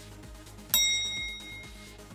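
A single bright bell-like ding a little under a second in, ringing out and fading over about a second: a quiz's correct-answer chime. It plays over electronic background music with a steady beat.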